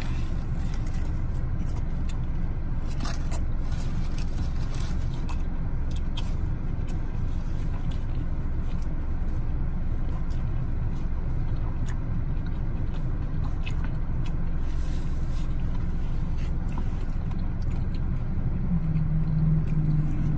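Steady low rumble of a car idling, heard inside the cabin, with a few faint crinkles of a paper sandwich wrapper and chewing as a chicken sandwich is eaten.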